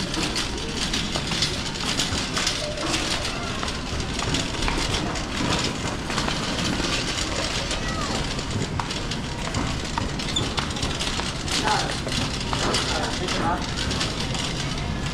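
Shopping cart rolling along a tiled supermarket floor, its wheels and wire basket rattling steadily, over a murmur of voices in the store.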